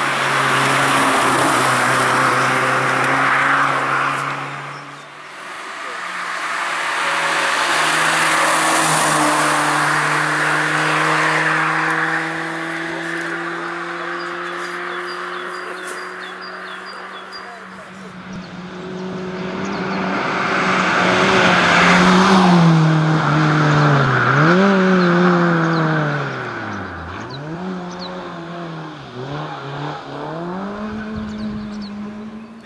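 Suzuki Swift rally car engine held at high revs as the car passes at speed and pulls away, the note climbing slowly with a brief dip about five seconds in. Later the engine note rises and falls sharply three or four times in quick succession as the car brakes and accelerates through the stage.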